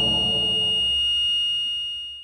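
Dramatic sound-effect sting: a held chord with a bright, high ringing tone over low tones, fading slowly.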